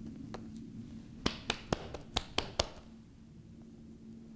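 Fingers clicking and tapping on the plastic casing of a BMW ConnectedRide Navigator while working its battery out: about six sharp clicks in quick succession, starting a little over a second in.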